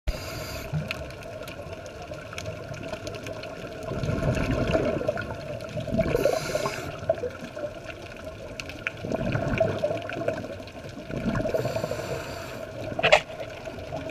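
Scuba diver's breathing heard underwater: exhaled bubbles rushing out of the regulator in several swells a couple of seconds apart, over a steady underwater hiss, with a sharp click near the end.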